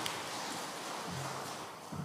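Soft rustling and shuffling of paper folders being handled by a group of people.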